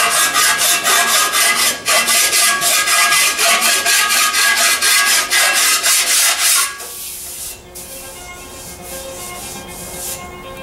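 Lead filler on a bare steel motorcycle fender being smoothed by hand: a scraping, abrasive tool rubbed back and forth in quick, even strokes, several a second, that stop abruptly about two-thirds of the way through.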